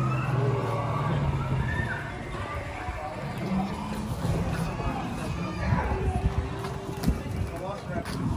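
Several people talking in the background, with a low steady hum that stops about two seconds in.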